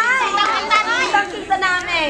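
Speech only: a woman talking into a handheld microphone, her voice high and lively.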